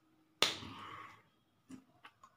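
A single sharp hand slap with a brief rustling tail, then a faint tap near the end: the signer's hands striking during sign language.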